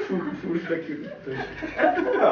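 People laughing and chuckling together, with some talk mixed in.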